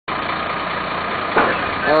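A vehicle engine idling steadily, with a short knock a little over a second in.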